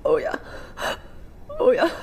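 A woman speaking through tears, broken by a sharp sobbing intake of breath a little under a second in.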